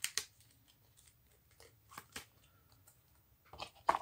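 Playing cards from a game's action deck being gathered and shuffled: a few faint scattered clicks and rustles, clustered near the start, around the middle and just before the end.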